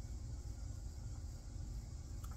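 Faint, uneven low rumble of outdoor background noise, with no distinct event standing out.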